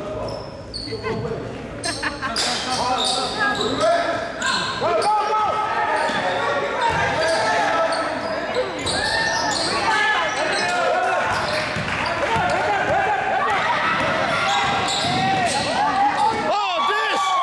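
Basketball game in a gym: a ball bouncing on the hardwood floor with players and spectators calling out, echoing around the hall.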